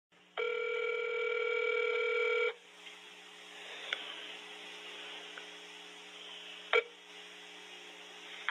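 A telephone line tone held for about two seconds, then it cuts off and quiet phone-line hiss follows, with a click about four seconds in and a short burst of noise near the end.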